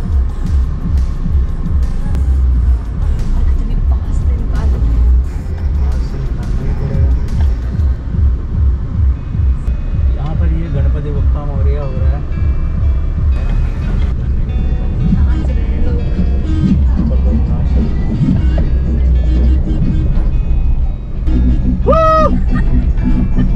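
Background song with a heavy bass beat and vocals.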